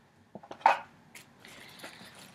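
Gift packaging being handled. A paper shopping bag and a cardboard shoe box rustle sharply once, about two-thirds of a second in, with a few light taps and knocks around it.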